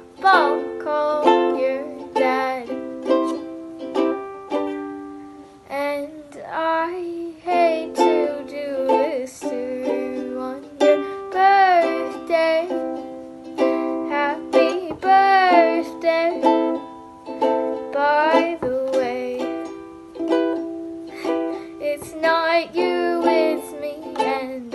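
A Fender ukulele strummed in repeated chords, with a girl's voice singing a wavering, sustained melody over it.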